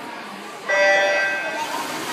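Electronic starting beep of a swim meet start system, one steady tone about a second long, starting suddenly, then a rising wash of splashing as the swimmers dive in, over spectators' voices.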